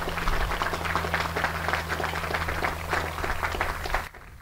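Audience applauding: dense, steady clapping that cuts off suddenly at the end, over a steady low hum.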